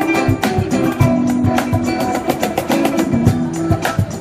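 Live instrumental fusion music: a guzheng (Chinese plucked zither) playing a melody with an electric guitar, over a steady cajon beat of deep thumps and sharper slaps.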